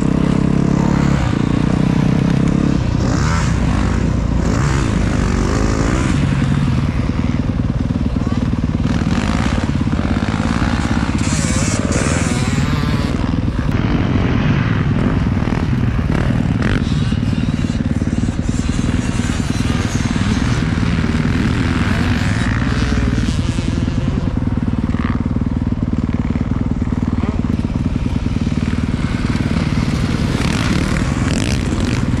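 Dirt bike engine heard close up from the rider's helmet as it is ridden around a motocross track, running hard without a break, its pitch rising and falling with the throttle.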